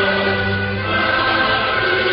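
A national anthem sung by a choir over instrumental backing, with long held notes.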